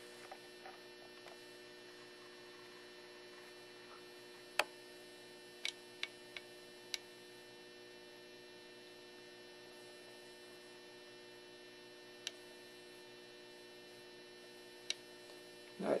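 Faint, steady electrical hum from the powered electrolysis rig, with a few sharp ticks, several of them about five to seven seconds in.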